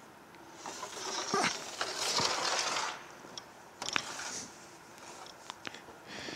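Handling noise as the rotor of a hybrid's electric drive motor is picked up and brought to the bench: a stretch of rustling for the first few seconds, then a few light clicks and knocks.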